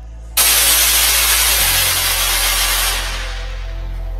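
A loud, even hiss cuts in suddenly about a third of a second in and fades away from the top down over the last second, over steady bass notes of music.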